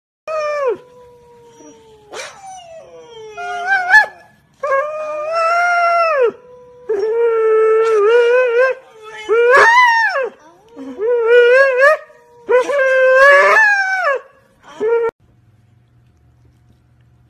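Siberian huskies howling and yodelling in a string of about eight long, wavering calls that slide up and down in pitch. In places a second, steadier held howl sounds underneath.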